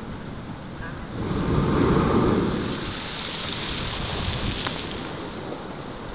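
Sea blowhole, the 'natural geyser' fed by Atlantic surf, erupting: a rush of water and spray that swells about a second in and dies away over the next couple of seconds, over steady wind noise.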